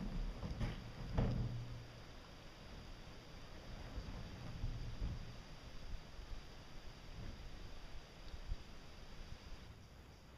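Muffled knocks and scraping of a fiberglass cone being pushed up and propped from inside a concrete water tank, with two sharper knocks about a second in.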